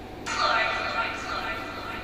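Quiet opening of a music video played back: a steady hissy drone with faint held tones that cuts in about a quarter second in and slowly fades, just before the song's beat starts.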